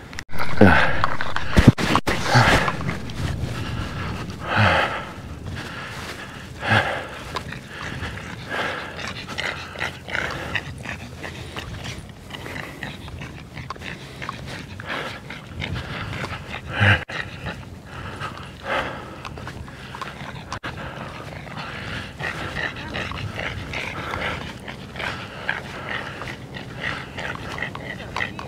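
A pug panting in the heat as it walks, breath after breath at an uneven pace.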